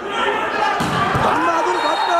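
A volleyball slamming into the court floor with a single heavy thud about a second in, over a steady babble of voices in a large indoor sports hall.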